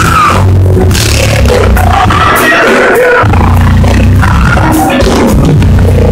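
Loud live praise music from a church band, with heavy bass and voices singing over it.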